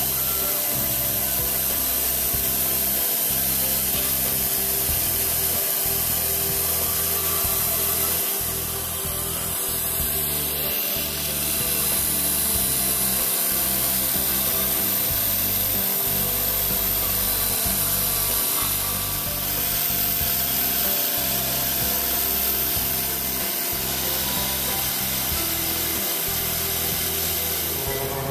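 Belt-drive Sieg X2 mini-mill under CNC control cutting ABS plastic with an end mill: the spindle runs steadily while the axis motors drive the cut, giving a steady hum with several steady whining tones and a low rumble that swells and fades.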